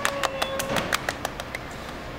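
Two people clapping their hands in a short burst of applause, about six or seven claps a second, stopping about a second in. A voice holds one note over the clapping.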